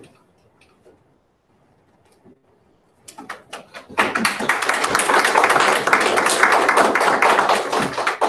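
Small audience applauding: a few scattered claps about three seconds in, building a second later into steady, loud applause.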